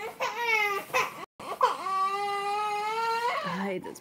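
A young child crying: a short cry, then after a brief break a long, high, held wail.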